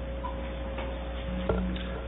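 Steady electrical hum of a broadcast feed in a council chamber, with a thin high tone over it. A single soft knock comes about one and a half seconds in, as a speaker reaches the lectern microphone.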